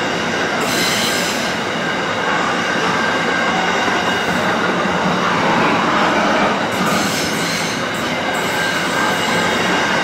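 SCT Logistics container freight wagons rolling past at close range, with steady wheel-on-rail running noise and a thin high squeal from the wheels.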